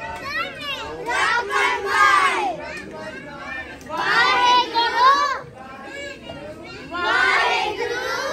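Group of children's voices, joined by adults, reciting a prayer together in unison. It comes in chanted phrases of a second or so, with short pauses between them.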